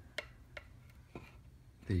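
A few faint, short clicks in an otherwise quiet room, then a man's voice starts right at the end.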